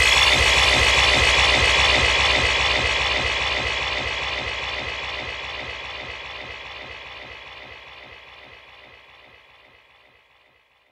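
Dark psytrance music fading out: a dense electronic texture over a fast, steady pulsing beat, getting steadily quieter until it dies away at the very end.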